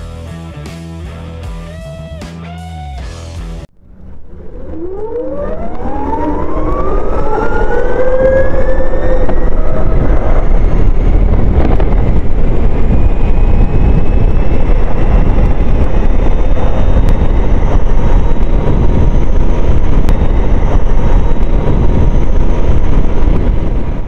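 A few seconds of guitar music, cut off suddenly, then an Ather 450X electric scooter pulling away hard in Sport mode: its electric drive whine rises steadily in pitch for several seconds and levels off at speed. Heavy wind rumble on the microphone covers it throughout the ride.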